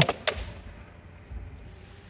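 Plastic panel of a Stanley folding hand truck being flipped up on its hinge: a couple of short sharp clicks right at the start, then a soft low bump or two.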